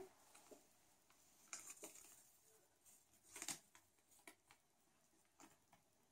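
Near silence, broken by faint, brief rustles and small ticks of a paper vanilla sachet being handled and opened, about one and a half seconds in and again about three and a half seconds in.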